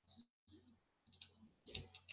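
Near silence with a few faint, scattered clicks and small handling noises.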